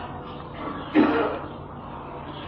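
A man clears his throat once, briefly, about a second in, over faint steady room hiss.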